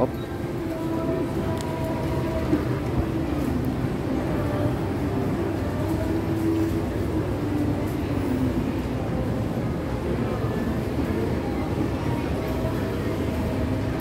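Escalator running: a steady mechanical rumble, with a faint murmur of voices.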